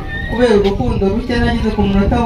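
Speech only: a woman talking in Kinyarwanda into a handheld microphone.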